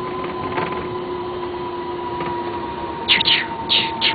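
A vehicle engine running with a steady hum under a hiss. About three seconds in come a few short, sharp, high-pitched sounds.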